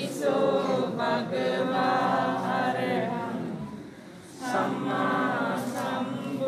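A group of voices chanting Buddhist Pali verses in unison, with a short pause for breath about four seconds in before the chant resumes.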